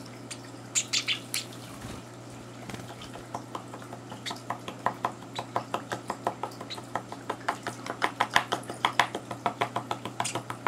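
Hand-fed Java sparrow chick begging with short, rapid cheeps repeated evenly, growing faster and louder to about four a second near the end. A few higher chirps come about a second in, over a steady low hum.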